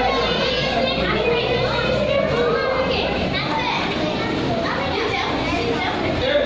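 Many children's voices chattering and calling out at once, overlapping so that no single speaker stands out.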